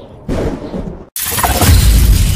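Glass-shattering sound effect bursting in about a quarter second in and dying away, then a split-second dead stop before loud trailer music with deep bass cuts in just past the halfway point.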